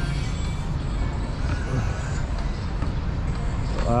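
Steady low-pitched outdoor background noise, with faint distant voices.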